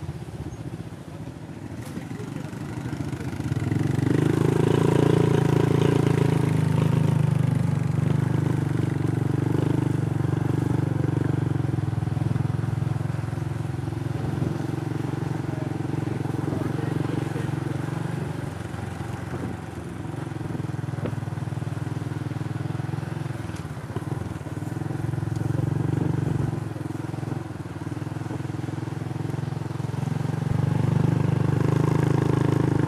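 Small motorbike engines running steadily under way on a dirt track, louder from about four seconds in, with the level rising and falling a little as they ride.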